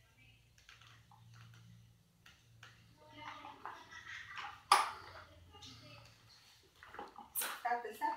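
Faint toddler babbling with knocks and rattles of a plastic ride-on toy on a wooden floor. A sharp knock a little past halfway through is the loudest sound.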